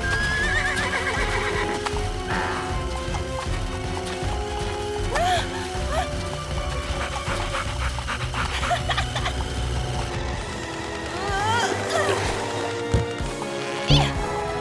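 Cartoon pony whinnying, with a wavering whinny right at the start, and hooves clip-clopping, over background music.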